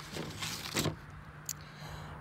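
Short rustles and scrapes of paper cut-outs and a handheld camera being handled, the strongest a little under a second in, with a small click about halfway through.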